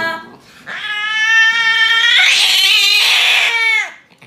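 Domestic cat yowling in distress while restrained for an injection: one long, drawn-out yowl that starts under a second in, turns harsher in the middle and drops in pitch as it breaks off near the end.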